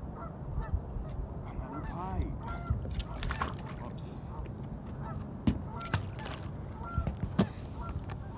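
Geese honking, a series of short calls repeating every second or so, over a steady low rumble, with a few sharp knocks about three and five and a half seconds in.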